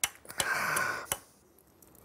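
A few light knocks on a wooden board from a first, wrong attempt at driving in a nail, with a short breathy sound between them.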